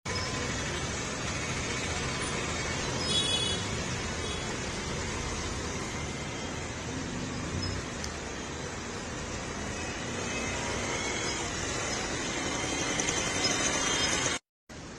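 Steady road traffic noise, with a brief high-pitched sound about three seconds in.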